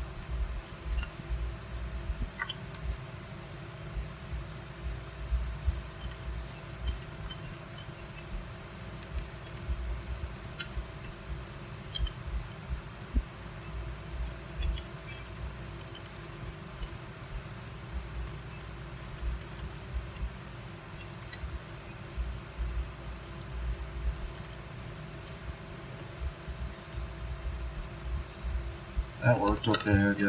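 Small, sharp metallic clicks and clinks, scattered and irregular, as the brass terminal screws and plastic parts of a 30-amp twist-lock plug are handled while wires are fitted into it. A steady low hum runs underneath.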